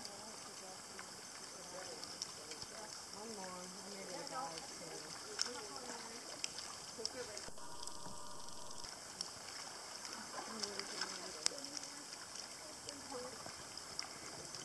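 Quiet water with scattered small splashes and drips on a calm sea surface, and faint distant voices now and then.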